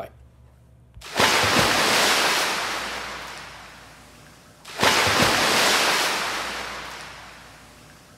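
Ocean surf: two waves breaking on a shore, each coming in suddenly and then washing out and fading over about three seconds, the second a little under four seconds after the first.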